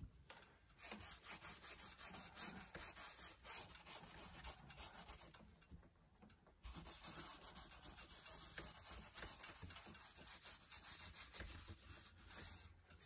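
Paper towel rubbing at thinned burnt-sienna oil paint in quick, faint strokes, with a short pause about halfway through.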